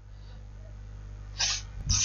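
A low steady hum under a pause in speech, then about one and a half seconds in a short, sharp breathy noise from a person, like a quick sniff or breath, just before talking resumes.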